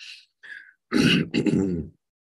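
A man clearing his throat once, about a second in, his voice hoarse and largely lost.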